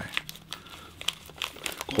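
A small plastic zip bag crinkling and crackling as it is handled and opened.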